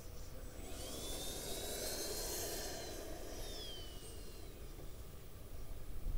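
Twin 64 mm electric ducted fans of an Arrows F-15 model jet whining and hissing in a flyby. The sound swells about a second in, and the whine drops in pitch from about three seconds in as the jet goes past, then fades.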